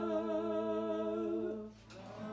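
A person humming one long held note of the song's melody, which stops shortly before the end.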